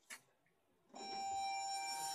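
OTIS ReGen elevator's arrival chime: a light click, then a single electronic ding about a second in that rings steadily on.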